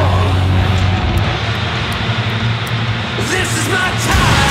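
A field of MX2 motocross bikes revving at the start gate under background music. The music's heavy bass drops out about a second in, leaving a few sharp ticks. The engines rev rising near the end.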